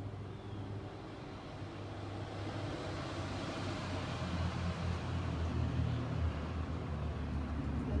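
A motor vehicle's low engine rumble, growing louder, with a rush of road noise that swells and fades about midway.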